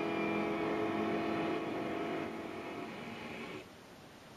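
Film soundtrack playing from a television speaker: a sustained drone of many held tones together, which fades and stops about three and a half seconds in.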